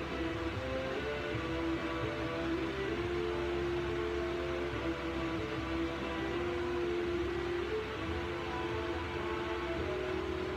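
Slow background music with long held notes at a steady level.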